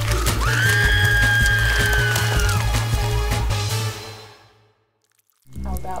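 Trailer music with a steady bass beat, over which a woman lets out one long, high scream in the first half. The music then fades to a brief silence and comes back near the end.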